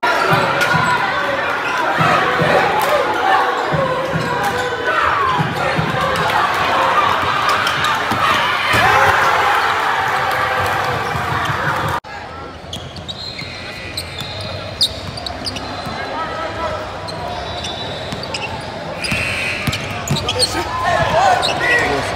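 Live game sound from an indoor basketball gym: a ball bouncing on the hardwood court under a dense din of crowd voices. About halfway through it cuts to a quieter, echoing gym, where the ball's bounces, short high squeaks and scattered voices stand out.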